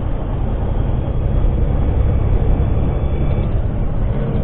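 Steady engine drone and road rumble inside a semi truck's cab at highway speed, picked up by a dash cam's microphone.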